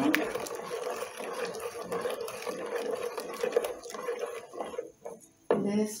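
A ladle stirring hot milk atole in a stainless steel pot, the liquid swishing with small scrapes and clicks against the pot, over a steady hum; the stirring dies away about five seconds in.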